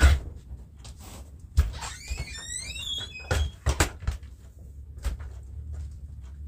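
A house door being opened and shut, with knocks and clicks from the latch and frame. There is a squeak of gliding tones about two seconds in.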